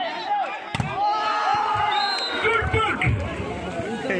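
A single sharp smack of a volleyball being struck, just under a second in, amid spectators shouting and cheering, with long drawn-out calls from several voices.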